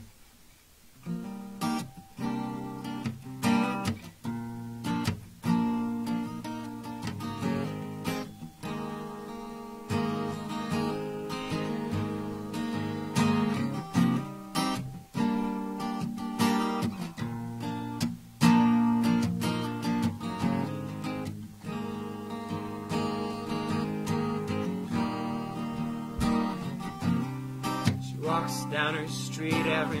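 Solo acoustic guitar strummed and picked as the intro of a slow song, starting about a second in after a brief quiet. A voice begins singing right at the end.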